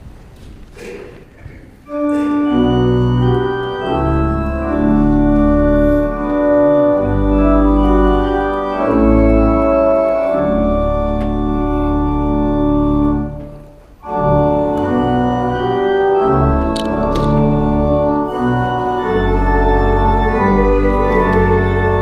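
Church organ playing a hymn in sustained full chords, entering about two seconds in, with a short break between phrases near the middle.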